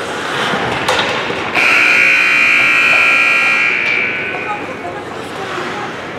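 An ice rink's buzzer sounds suddenly about a second and a half in. It holds loud and steady for about two seconds, then dies away in the arena's echo, marking a stop in play. Voices carry faintly in the background.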